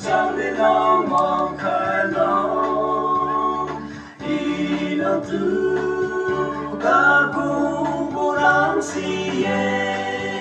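A group of men singing together into microphones, unaccompanied, with long held notes; the singing breaks off briefly about four seconds in, then resumes.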